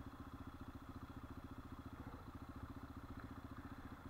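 Dirt bike engine idling steadily, a fast even pulsing.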